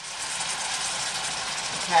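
Pork chops sizzling steadily in hot olive oil in a stainless steel skillet as orange juice is poured into the pan.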